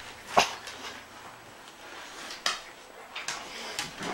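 Dogs rustling and tearing at wrapped presents, with a few sharp clicks and knocks: one about half a second in, another around two and a half seconds, and smaller ones near the end.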